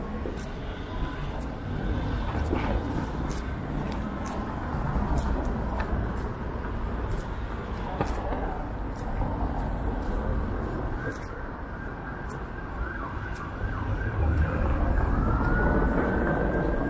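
City street traffic passing, a steady rush of vehicle noise with faint ticks, and a rising whine near the end.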